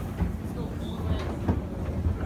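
Macy's original wooden escalator running: a steady low mechanical rumble with scattered knocks.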